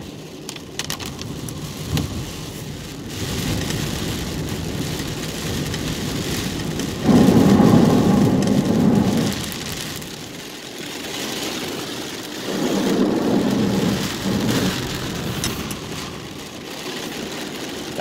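Rain and wet road noise heard from inside a car driving through a storm, a steady rushing hiss. Two louder rushing surges of about two seconds each come near the middle and again about two-thirds of the way through.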